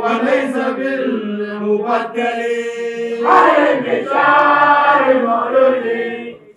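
Men's voices chanting an Arabic devotional qasida in long, drawn-out held notes. The chanting grows louder and fuller about three seconds in.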